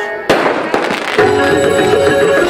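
Fireworks going off: a sudden loud burst of crackling pops about a third of a second in, over devotional music that comes back with a steady melody about a second in.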